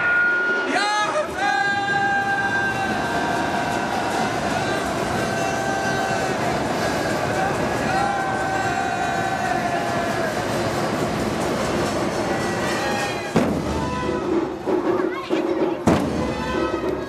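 A voice chanting in long held notes with gliding pitch over the noise of a large crowd. A sharp knock comes about thirteen seconds in, and heavy thumps start near the end.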